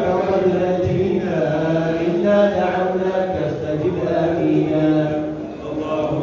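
A man's voice chanting a religious recitation from a booklet into a microphone, amplified over loudspeakers, in long held melodic phrases with a short break for breath near the end.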